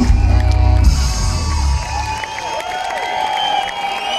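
A live band's amplified music finishing about a second in, its bass dying away, followed by a crowd cheering and whooping.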